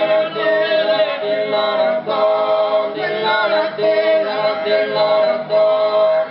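Sardinian cantu a cuncordu: four men's voices singing close polyphony a cappella. The harmony holds one strong steady note while the upper parts shift, with short breaks between phrases every second or so.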